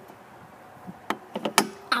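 A few sharp clicks and knocks in the second half, from hands working the latch of a vinyl fence gate.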